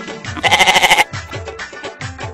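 Background music with a steady beat, and about half a second in a short, loud bleat like a sheep's, lasting about half a second.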